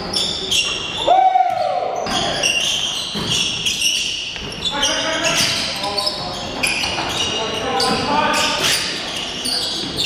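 Indoor basketball game: sneakers squeaking on the hardwood court and the ball bouncing, with players' voices and one loud shout about a second in, all echoing in the gym.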